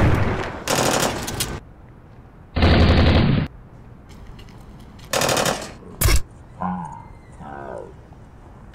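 Film gunfire: a pistol shot followed by several bursts of rapid automatic fire, a second or less each, and a single sharp shot about six seconds in. Near the end a person cries out.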